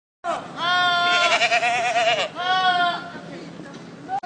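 A goat screaming: one long bleat that wavers in pitch through its middle, then a shorter second bleat.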